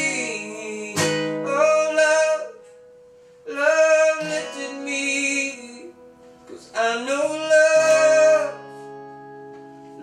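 Man singing to his own capoed acoustic guitar: three sung phrases, with held guitar notes ringing on in the gaps between them and a sharp strum about a second in.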